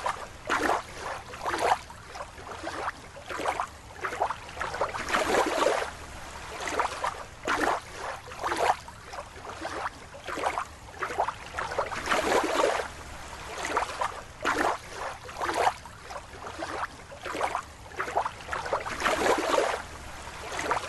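Water sloshing and splashing in a run of irregular swishes.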